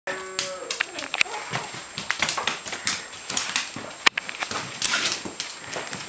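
Puppies and a larger dog running and scrabbling on a hard vinyl-tile floor, their claws clicking in quick, irregular taps, with one louder knock about four seconds in. A puppy whines briefly at the very start.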